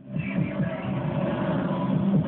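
Shortwave radio broadcast of The Mighty KBC on 6095 kHz playing through a receiver's speaker, coming back right at the start after a brief gap: a station jingle or advert, its sound cut off above the treble.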